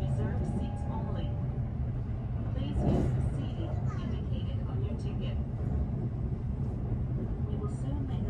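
Steady low running rumble of a Kintetsu 22600 series electric train at speed, heard from inside its passenger cabin, with a brief louder whoosh a little under three seconds in.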